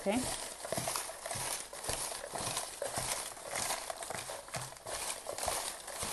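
Hands stirring and rummaging through a box of folded paper slips, paper rustling with an irregular run of small crinkles and light taps.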